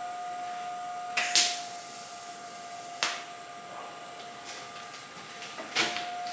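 Welding arc struck briefly three times, about a second in, at about three seconds and near the end. These are light fusion tacks on a steel frame tube, kept weak so the tube can still be moved. A steady faint hum runs underneath.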